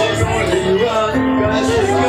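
Worship music: voices singing a melody over steady instrumental accompaniment.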